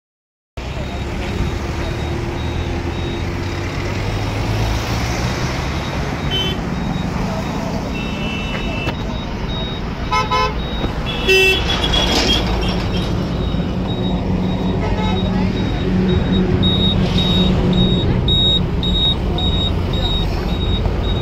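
Vehicle engines idling in stopped traffic, with car horns honking several times around 10 to 12 seconds in. A high beep repeats steadily throughout, and voices can be heard in the background.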